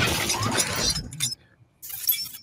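Sound effects of an animated logo intro: a loud, noisy effect that dies away about a second and a quarter in, followed by a short second burst near the end.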